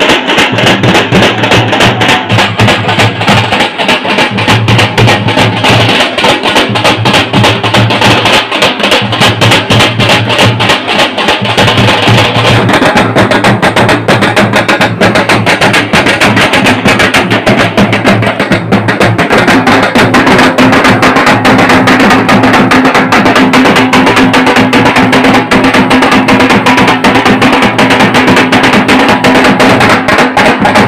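A street drum band beating large drums in a fast, dense, steady rhythm for dancing.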